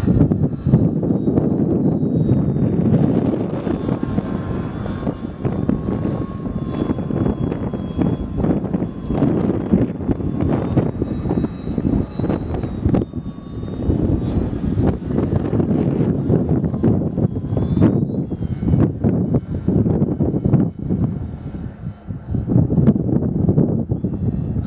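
The electric motor and propeller of a Multiplex FunCub RC model plane flying high overhead, a thin steady whine that glides up in pitch about 18 seconds in, under a loud, gusting rumble of wind on the microphone.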